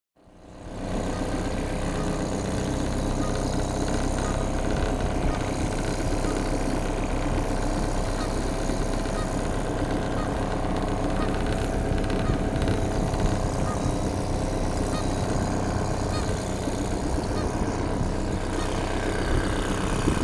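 British Seagull single-cylinder two-stroke outboard motor running steadily, driving a small boat along.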